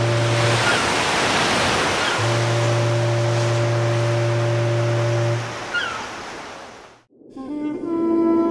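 A ship's horn sounding low and steady over a rush of surf: one blast breaks off just after the start and a second is held for about three seconds. The surf then fades out, and soft ambient music with ringing, bell-like tones begins near the end.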